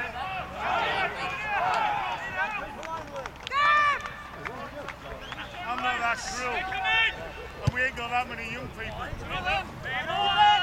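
Footballers shouting and calling to one another across an open pitch during play, several voices overlapping, with one loud, high shout about four seconds in. A single sharp knock sounds near the eight-second mark.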